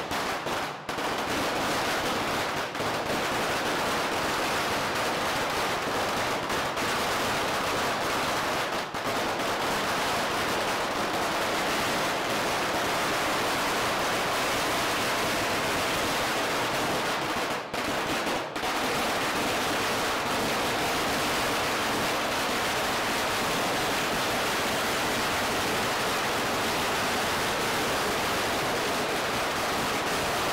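A long string of firecrackers going off in one continuous, dense crackle of rapid bangs, with a few momentary lulls.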